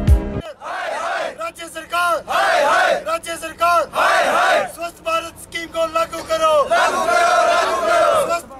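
A crowd of protesters shouting slogans in chorus, in short repeated bursts, with fists raised. A news music sting cuts off in the first half-second.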